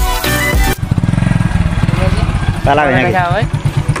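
Background music cuts off under a second in, giving way to a motorcycle engine running steadily with a fast, even low pulse as it is ridden. A man laughs and speaks over it past the halfway point.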